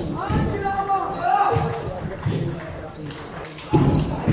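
People talking in a large hall, with a loud thump near the end.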